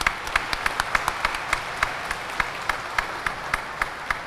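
A small audience clapping in a hall: scattered, irregular hand claps, several a second.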